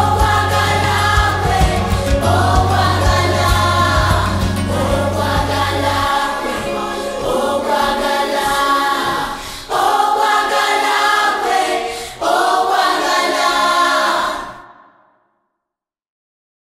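Background song with several voices singing in phrases over accompaniment; the low bass drops out about six seconds in, and the music fades out near the end.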